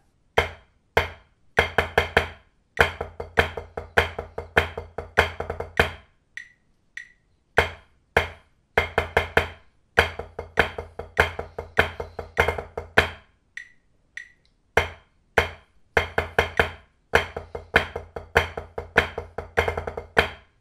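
Drumsticks playing flam rudiments on a practice pad set on a marching snare drum: a bar of flam accents, then one count each of flam drags, cheeses and fives. It comes as three dense phrases of sharp strokes with a short rest between each.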